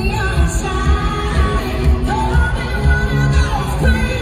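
Live pop-country music from an arena concert: a female singer over a full band with a steady bass beat, heard from the audience with the echo of a large hall.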